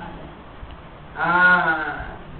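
A short pause, then a man's voice drawing out the interjection "haaa" for under a second, its pitch rising and then falling.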